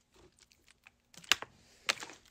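Thin plastic water bottle crackling as it is handled and raised for a drink: a few faint clicks, then two sharper cracks in the second half.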